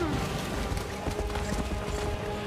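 A horse galloping, its hoofbeats under dramatic film-score music.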